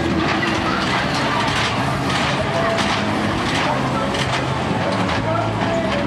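Mine-cart style coaster car rolling along its steel track with a repeated clacking, over the voices of a fairground crowd.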